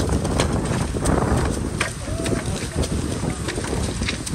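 Wind buffeting the microphone over a steady low rumble, with repeated sharp cracks of celery stalks being cut and trimmed with a harvest knife.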